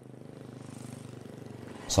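Motorcycle engine approaching, growing steadily louder as it nears.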